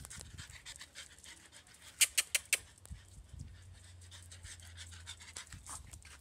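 A dog panting in quick, faint breaths, with a quick run of sharp clicks about two seconds in, the loudest sound.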